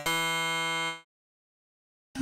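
A software instrument preset preview, Kontakt 7's 'Contemp Digital – Phuture Bell' sample patch: a single bright, sustained pitched note rich in overtones, held for about a second and then cut off sharply.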